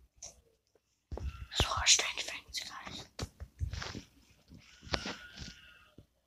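A person whispering close to the microphone in breathy, unvoiced bursts, starting about a second in.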